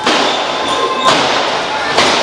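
Thuds of wrestlers' bodies hitting a wrestling ring's canvas, over steady background noise, with a brief high tone about halfway through.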